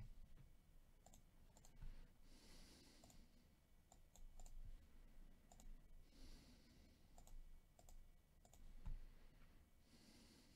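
Near silence with faint, scattered computer-mouse clicks and a soft hushing sound about every three and a half seconds.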